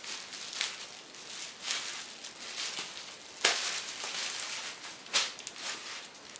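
Rustling and crackling of cardboard and plastic packaging being handled, with two louder rustles about three and a half and five seconds in.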